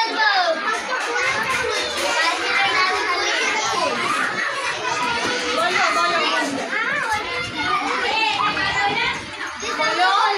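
Many children's voices talking at once, an overlapping babble of chatter with no single clear speaker.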